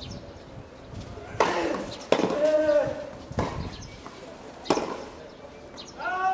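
Tennis racket strings hitting a ball in a rally: a handful of sharp hits a little over a second apart. A short voice sound comes in the middle, just after the second hit.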